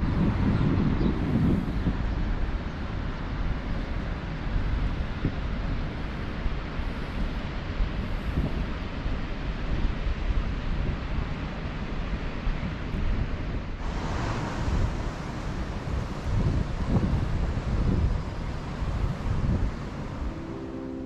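Wind buffeting the camera's microphone: a steady low rumble with gusts. About fourteen seconds in, a brighter hiss joins.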